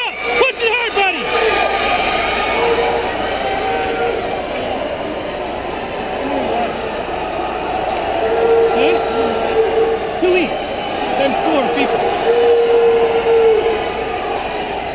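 Crowd of spectators in a large gymnasium at an indoor track meet, a steady din of many voices with shouts and cheers. Several long, drawn-out calls are held in the second half.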